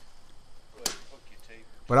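A single sledgehammer blow on a bent-over steel rebar upright, about a second in, tapping it down so it sits below the slab's grade.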